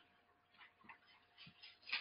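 Near silence with a few faint, irregularly spaced ticks and light rustles: the pages of a Bible being turned on a wooden pulpit.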